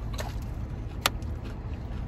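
Steady low rumble inside a car cabin, with a single sharp click about a second in.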